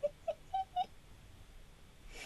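A person's voice: a quick run of about six short, high-pitched sounds within the first second, rising in pitch.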